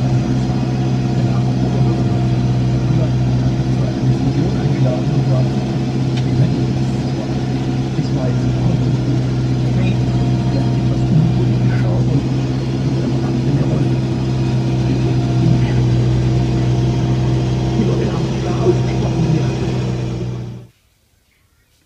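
Fendt 311 Vario tractor's four-cylinder diesel engine running steadily under load, heard from inside the cab, a constant drone.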